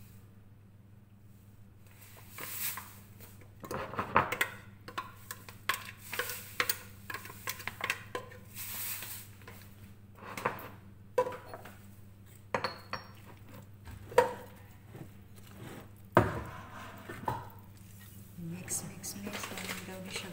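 A metal spoon stirring a thick carrot cake batter in a glass mixing bowl, with irregular clinks and scrapes of metal against glass that begin after a couple of quiet seconds.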